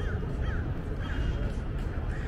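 A bird giving short calls, three in quick succession about half a second apart, over a steady low rumble of outdoor background noise.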